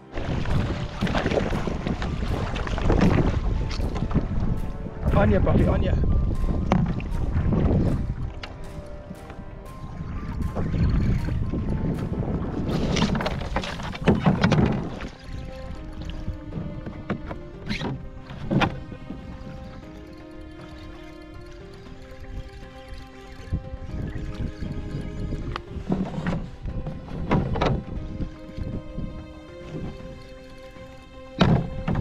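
Kayak paddle strokes splashing through sea water, a noisy surge about every two seconds. About halfway through, background music with held tones takes over, with a few sharp clicks.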